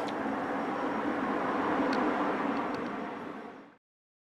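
Street traffic noise: a steady rushing sound of a passing vehicle that swells slightly about halfway through, then fades out and drops to silence just before the end.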